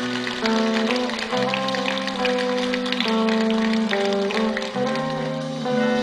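A band playing an instrumental reggae passage: a melody of held, stepping notes from electric guitar and keyboard over a steady bass line, with light percussion ticks.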